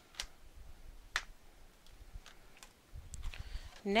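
Scissors snipping through kraft cardstock: two sharp snips about a second apart, then a few fainter clicks and paper rustling as the card is handled.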